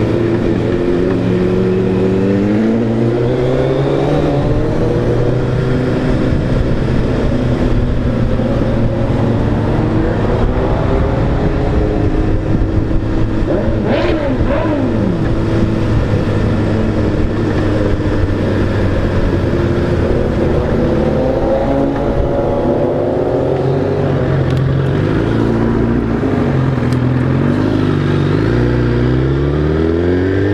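Suzuki Hayabusa inline-four engine heard from the rider's seat while riding: the engine note climbs with throttle and drops back at each gear change, several times over, under a steady rush of wind and road noise.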